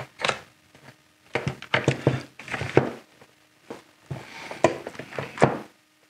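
Plastic electrical receptacles and their stiff wiring knocking and scraping against a metal rack PDU enclosure as they are pushed into place: a run of irregular thunks and clicks.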